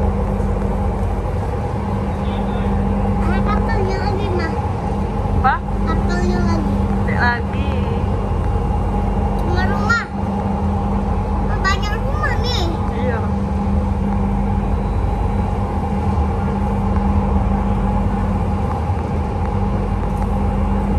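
Palembang LRT electric train heard from inside the car while running: a steady rumble with a steady hum underneath. A child's high voice chimes in several times in the middle.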